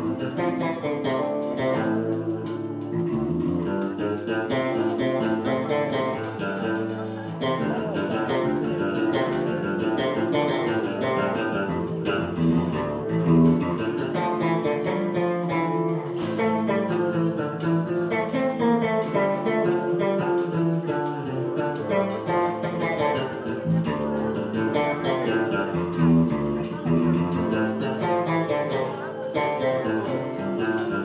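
Live band playing an instrumental passage led by electric guitar, over bass and drums with steady cymbal strokes.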